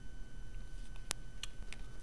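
A few light clicks and taps from a taped, folded paper cone being handled and set down on a wooden table, with one sharp click about a second in.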